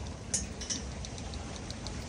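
Small sharp clicks and light ticking from a spinning fishing reel being handled, with one crisper click about a third of a second in.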